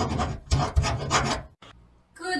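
A scratchy, rasping sound effect in several quick strokes, stopping about one and a half seconds in.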